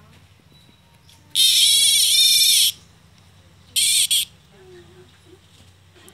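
Cicada giving two loud, harsh, wavering buzzes, the first lasting over a second and the second shorter with a brief catch in it: the alarm buzz of a cicada threatened by an emerald tree skink.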